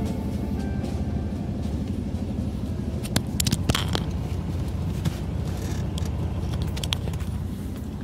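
Steady low rumble with a handful of short sharp clicks about three to four seconds in and a few more near the seventh second.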